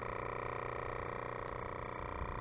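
A steady mechanical hum made of several held tones, even and unchanging, with nothing else happening.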